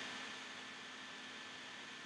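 Faint steady hiss of room tone and recording noise, with a thin steady hum underneath.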